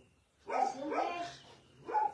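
A dog vocalising: one drawn-out call of about a second with a wavering pitch.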